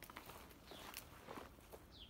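Faint footsteps on gravel, a few soft scattered steps.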